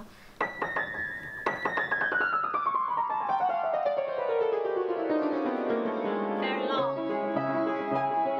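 Upright acoustic piano played fast: after a few opening notes, a rapid run steps steadily down from high to low over about five seconds, then a quick upward sweep leads into held chords near the end.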